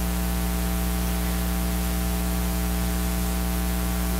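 Steady electrical mains hum with hiss: a buzz of many evenly spaced tones under a layer of static, unchanging throughout.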